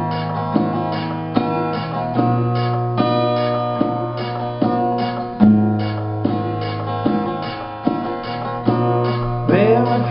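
Acoustic guitar strummed in a steady chord rhythm, an instrumental passage of a song. A man's singing voice comes in near the end.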